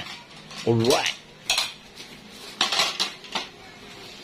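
Cutlery and plates clinking as food is served, a few sharp separate clinks spread over the seconds.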